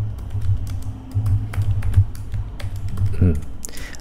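Typing on a computer keyboard: a rapid, uneven run of keystroke clicks, over a low steady hum.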